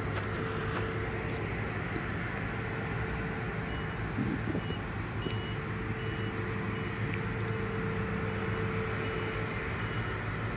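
Claas Jaguar forage harvester running steadily under load while chopping maize, a constant engine drone with a steady whine.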